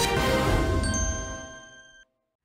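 Closing of a TV show's title theme music: a bright chime sounds about a second in and rings on alone, fading away to silence.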